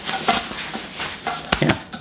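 A padded tripod bag being shrugged on by its backpack straps: fabric and strap handling with a few sharp clicks and knocks, a pair of them about one and a half seconds in.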